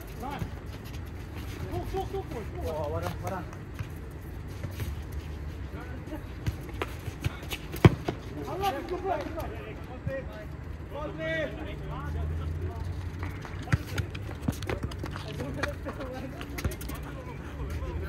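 People talking at a distance, with scattered sharp knocks; the loudest knock comes about eight seconds in. A low steady hum runs beneath from about twelve seconds on.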